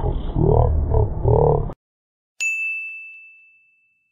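A deep, slowed-down, growling voice-like sound for under two seconds, cut off abruptly, then a single bright ding sound effect about two and a half seconds in that rings on one high tone and fades out over about a second and a half.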